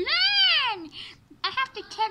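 A child's high-pitched, drawn-out vocal exclamation that rises and then falls in pitch, lasting under a second. It is followed near the end by a few short bits of voice.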